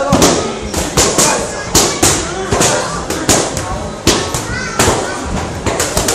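Muay Thai knee strikes smacking into a trainer's pads in the clinch, a fast run of sharp hits about twice a second.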